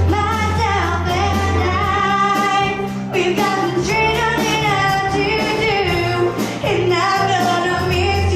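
A woman singing live into a microphone over band accompaniment, holding long notes that bend in pitch above a steady bass line.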